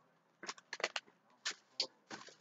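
Shopping bag rustling and crinkling in a few short bursts as a hand rummages through it for the next item.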